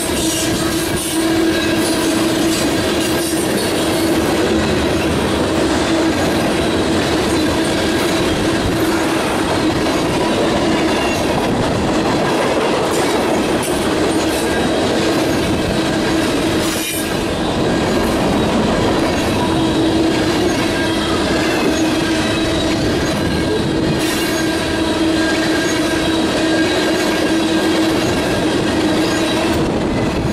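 Freight cars of a mixed manifest train rolling past close by: a continuous loud rumble and clatter of steel wheels on rail, with a steady whining tone running through it and an occasional sharp clack.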